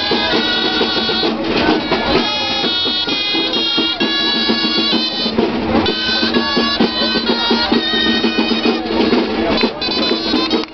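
A Catalan street band of gralles (shrill double-reed shawms) and a drum plays a folk dance tune: several reed melody lines in unison over a steady drumbeat.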